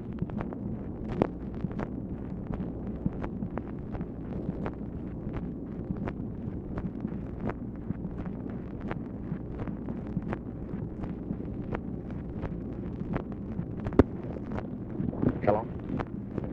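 Open telephone line on hold, heard through an old Dictabelt recording: steady hiss and hum with irregular crackles and pops several times a second, and one louder pop about 14 seconds in.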